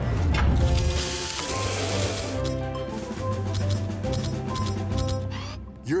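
Cartoon mechanical sound effects of a robot at work: a hiss from about half a second in to about two seconds, then rapid clicking like a ratchet, over background music with held notes.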